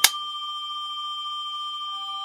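A film clapperboard snapped shut once, a single sharp clack right at the start. After it, a steady high tone of a few pitches hangs on unchanged.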